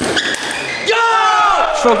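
A table tennis ball clicking off bats and table as a rally ends, followed about a second in by a loud shout of celebration at the won point, its pitch falling.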